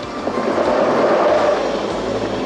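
X2 electric high-speed train passing close by at speed: a rushing whoosh that swells to a peak about a second in and then eases off.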